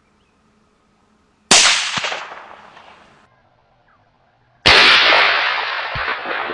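Two .223 Remington rifle shots about three seconds apart, each a sharp crack that fades away in a rolling echo, with a short knock about half a second after the first. The second shot's echo lasts longer.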